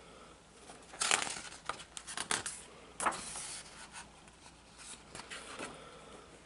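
Pages of a hardcover picture book being turned and handled: a few short papery rustles and swishes, the clearest about a second in and again around two and three seconds in.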